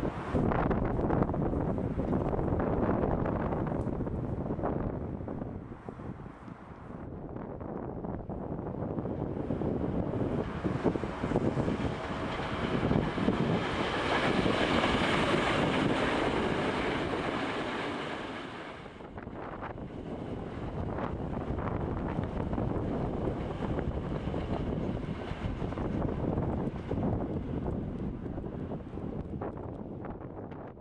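Strong wind buffeting the microphone, with a third-rail electric subway train of the Yokohama Municipal Subway Blue Line passing on an elevated track, loudest from about ten to nineteen seconds in. A high whine is mixed in as it goes by.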